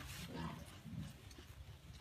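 Faint, low grunts from an African pygmy goat, two short ones about half a second and a second in.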